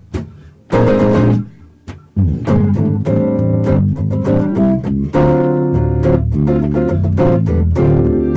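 Electric guitar and electric bass duo playing jazz live. The first two seconds hold separate, spaced-out guitar chords, then a fuller passage begins with a bass line underneath, growing denser about five seconds in.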